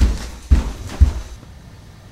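Three heavy, deep thumps about half a second apart, the last about a second in.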